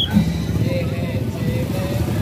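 Drum band music from a procession mixed with motorcycle engines running at low speed close by, with voices in the crowd.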